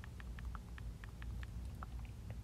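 Faint light clicks, about eight spread irregularly over two seconds, over a low steady hum.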